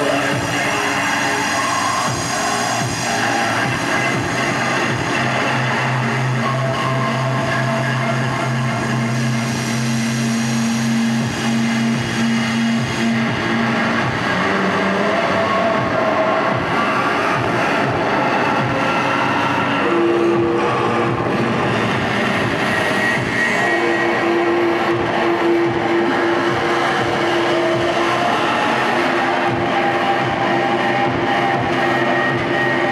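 Harsh noise music: a loud, unbroken wall of distorted electronic noise from a table of effects pedals fed by a handheld microphone. Steady droning tones sit inside it, a low one through the first half and a higher one in the second half.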